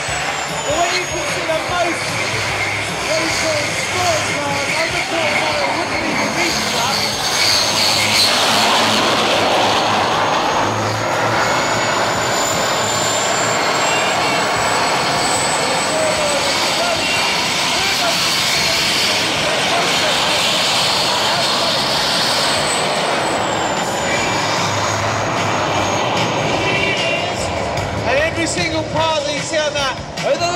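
Homemade gas-turbine jet engine on a go-kart running, a high turbine whine over a rushing blast of exhaust. The whine climbs and the exhaust grows louder about a third of the way in, holds, then drops back about three-quarters of the way through.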